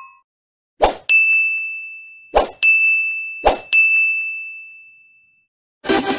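Subscribe-button sound effect: three times, a sharp click followed by a bright bell ding that rings on and fades out. Electronic dance music starts just before the end.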